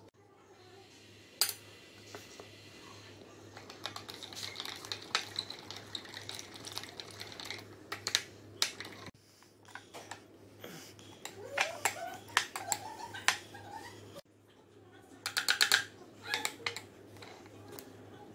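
A metal spoon clicking and scraping against a glass and a plastic tub while scooping powder and stirring it into juice, in irregular taps with a quick run of clinks a couple of seconds before the end. A low steady hum runs underneath.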